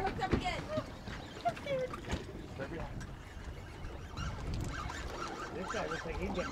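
Faint, indistinct voices of people on a fishing boat, over a steady low rumble of wind and water.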